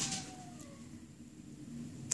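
Quiet room tone, with a faint tone gliding downward during the first second.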